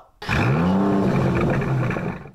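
A car engine revving up and back down, its pitch rising then falling over a steady rush, lasting under two seconds.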